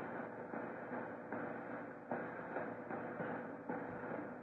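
Faint, steady hiss and room noise of an old tape recording, with a few soft knocks.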